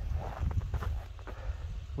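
Wind buffeting the microphone outdoors, a steady low rumble, with a few faint soft ticks.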